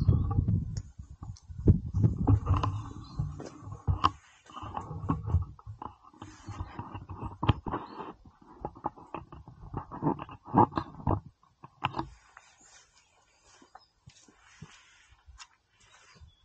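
Handling noise from a camera being moved and set down: irregular low rumbling, partly wind on the microphone, with scattered knocks and clicks, dying away about eleven seconds in to a faint background hiss.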